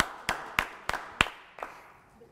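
Hand clapping: about six claps roughly three a second, fading out over the first second and a half.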